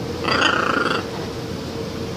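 A blue-and-gold macaw gives one short call, about three quarters of a second long, a quarter of a second in.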